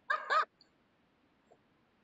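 A child's brief high-pitched laugh over a video call, two quick notes in the first half second.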